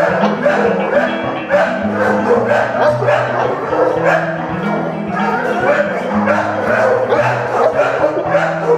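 Background music with a steady bass line, over dogs barking and yipping.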